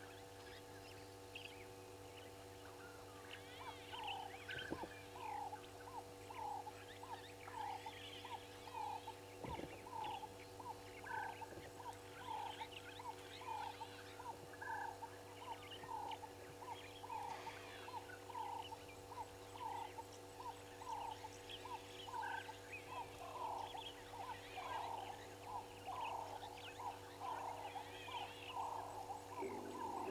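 Wild animal calls: one caller repeats short, even notes about two a second, starting a few seconds in. Scattered bird chirps sit higher up, over a steady low hum from the camera.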